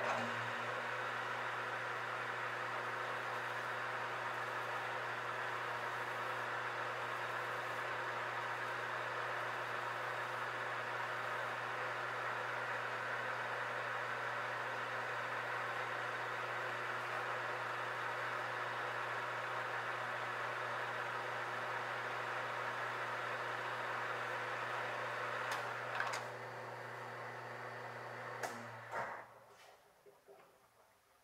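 Metal lathe running with the threaded workpiece spinning in the chuck: a steady mechanical hum with a gear whine. About 26 seconds in there is a click and the sound drops a little, then the lathe winds down and stops shortly before the end.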